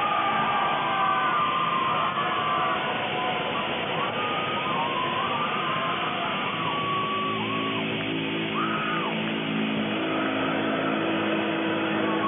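Heavy metal band playing live: distorted electric guitars and drums. High guitar notes slide up and down through most of it, and held low guitar chords come in from about seven seconds in.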